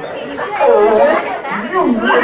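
Speech: a voice talking with chatter behind it, echoing in a large hall.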